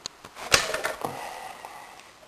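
A single sharp knock about half a second in, fading out over the next second.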